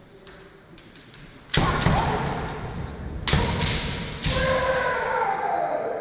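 Kendo attacks: sharp cracks of bamboo shinai strikes and stamping thuds on the wooden floor, with the fencers' loud kiai shouts. A burst of strikes and shouting starts about a second and a half in, another sharp strike comes about three seconds in, and a long shout near the four-second mark falls in pitch and trails off.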